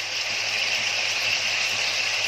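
Leftover mutton korma frying in hot oil with curry leaves, a steady unbroken sizzle.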